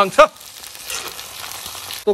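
Raw meat chunks and onions frying in a black iron wok over a gas burner, giving a steady sizzle.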